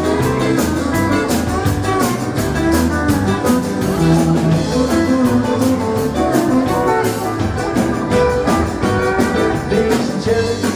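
Live country and rock'n'roll band playing an instrumental passage with no singing: guitars and electric bass over a steady drum-kit beat.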